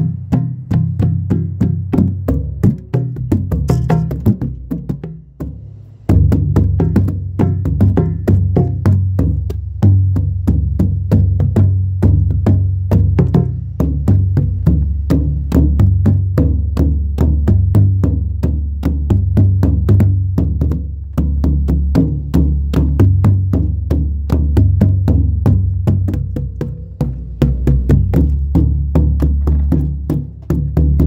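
A drum played fast by hand: dense, rapid strokes over steady deep bass notes. The playing thins and drops away briefly about five seconds in, then picks up again.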